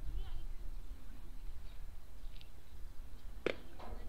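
Open-air baseball field ambience with faint distant voices, and a single sharp pop about three and a half seconds in: a pitch smacking into the catcher's mitt, taken for ball four.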